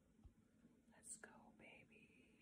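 Near silence: room tone, with a faint, brief breath about a second in.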